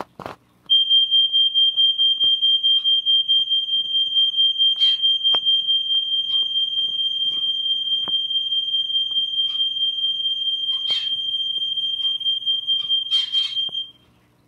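A loud, steady, high-pitched electronic tone with a rapid flutter in level, starting about a second in and cutting off suddenly at the end, over a few light taps and rustles.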